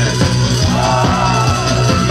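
Live rock band playing loudly with drums, guitars and a male vocalist singing, heard through the club's PA.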